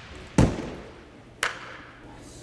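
A gymnast's feet landing with a deep thud on the landing mat after a somersault dismount from the parallel bars. About a second later comes a second, lighter and sharper smack.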